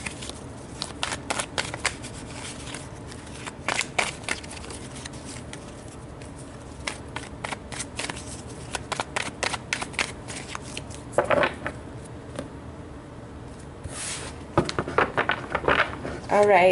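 A tarot deck being shuffled by hand: irregular runs of papery card clicks and riffles, with a quicker flurry near the end. A brief vocal sound about eleven seconds in.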